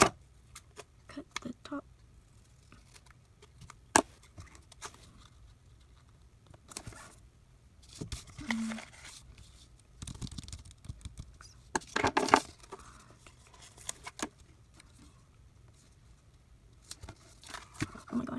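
Paper sticker sheets and planner pages being handled: scattered rustling, peeling and light taps of paper on a desk, with one sharp click about four seconds in and a denser burst of paper rustling about twelve seconds in.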